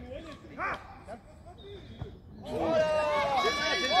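Male footballers crying out and shouting together, loud and overlapping, starting about two and a half seconds in after a single short exclamation. The cries are a reaction to a player going down on the pitch.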